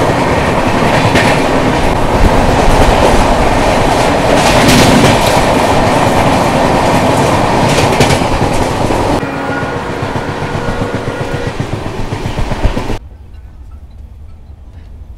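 Loud running noise of the Saraighat Express's coaches at speed, heard from the open doorway: a rushing rumble of wheels on rail with repeated clickety-clack over the rail joints. About nine seconds in the noise eases a little and faint steady tones come through. Near the end it drops suddenly to the much quieter coach interior.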